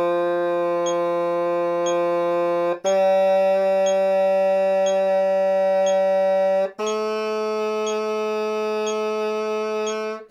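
Tenoroon playing the long-note warm-up: three steady held notes climbing from B through C to D, each lasting about four seconds with a short break between, over a soft tick about once a second.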